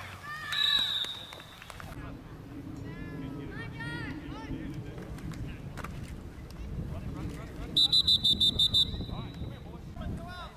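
Referee's whistle: one short blast about half a second in, then near the end a quick string of about seven loud toots within a second, the loudest sound, blown to stop play after a tackle. Faint spectator voices in between.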